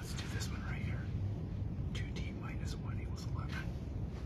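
Students whispering and talking quietly at close range, in short broken stretches near the start and again in the second half, over a steady low room rumble.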